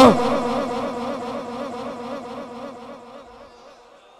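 Echo tail of a man's held, wavering vocal note from a public-address system's echo effect, repeating and fading steadily over about four seconds.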